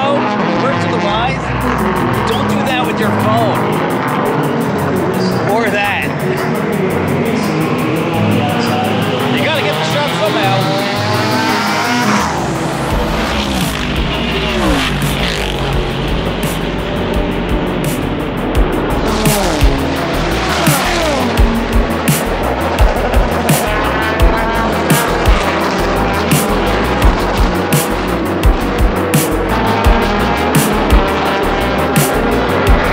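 Race cars going past on the track, each engine's pitch falling steeply as it passes. Background music with a steady beat comes in about halfway through.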